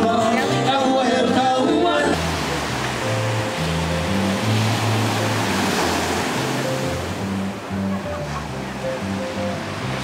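Music with singing for about two seconds, then a sudden cut to ocean surf breaking on a beach. A line of low bass notes carries on under the surf.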